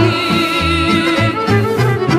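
Serbian folk (narodna) music from a band: a long held note with vibrato over a steady, bouncing bass line.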